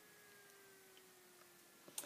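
Near silence: faint room tone with a low steady hum, and a single soft click near the end.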